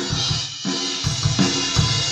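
Recorded drum-kit track, with kick, snare and cymbals in a steady beat, played back through a home-built RCA BA-6A-style tube compressor switched to gain reduction as its input level is brought up.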